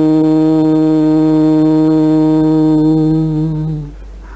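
A man's voice intoning the syllable "hum" on the out-breath as one long, steady tone at a single pitch, dying away just before the end.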